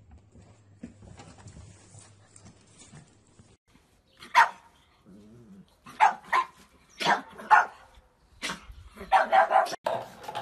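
A pug barking in play at another dog: short sharp barks from about four seconds in, one at a time and in pairs, then a quicker run near the end.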